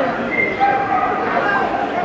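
A dog barking and yipping in a few high calls over a murmur of voices.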